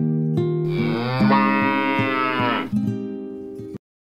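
A cow mooing once, a single long call of about two seconds that rises and then falls, over a light plucked-guitar jingle. The music stops abruptly near the end.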